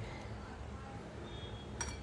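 A single light metallic clink with a short ring near the end, over a faint steady room background.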